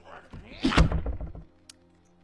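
A short cry, then a heavy, deep thunk of a blow landing on a wooden ship's mast, dying away by about a second and a half in. Soft background music underneath.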